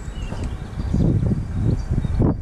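Wind buffeting the camera's microphone: an uneven low rumble that gusts louder about a second in, with faint bird chirps above it.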